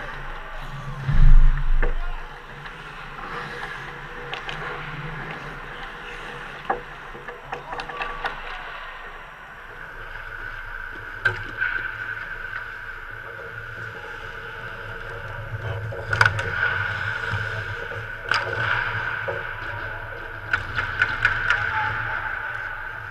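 Ice hockey play heard from the goal: skate blades scraping and hissing on the ice, with sharp clacks of sticks and puck. A heavy thump about a second in is the loudest sound.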